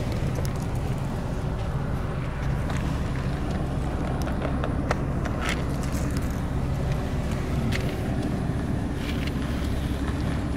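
Steady low hum of a car engine running, heard from inside the cabin with a window open, with a few light clicks scattered through.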